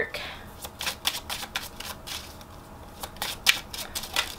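A deck of oracle cards being shuffled by hand: a run of quick, irregular card flicks and slaps, thinning out briefly near the middle before picking up again.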